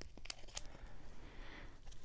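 Faint handling noise of a trading-card pack wrapper being turned over in the hands: soft crinkling with a few light clicks near the start.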